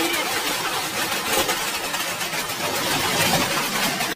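Heavy hail pelting down: a dense, steady clatter of countless hailstones striking hard surfaces.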